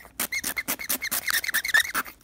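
Pencil scribbling on a handheld game console's screen: quick scratching strokes, several a second, many with a short squeak.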